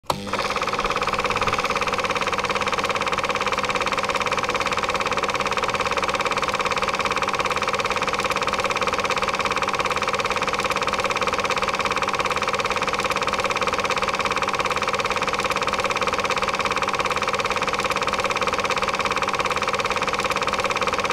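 A steady, unchanging mechanical drone with several held tones, starting abruptly at the very beginning.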